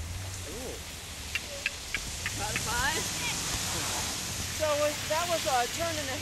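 Indistinct voices calling and talking over a steady rushing hiss, with a few short clicks about a second and a half in.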